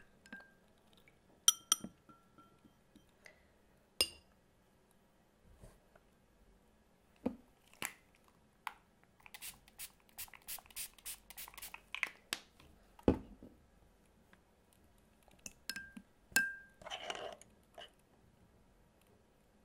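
Watercolour brushes and tools being handled and set down among a glass water jar and a ceramic mixing palette: scattered clinks and taps, a few ringing briefly, with a quick run of clicks about nine to twelve seconds in, a single knock just after, and a short rustle near the end.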